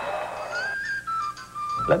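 Arena crowd noise fades out, and a few slow, high held notes of a whistle-like melody, in the style of an Irish tin whistle, step down in pitch as music under the segment.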